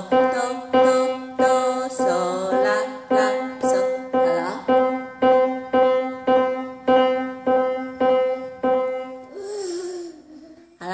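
Piano, one note struck over and over at an even pace of about two a second, each note dying away before the next. The playing stops about nine seconds in.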